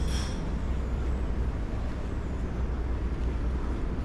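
A steady low rumble with a faint hiss above it, unbroken and without distinct events.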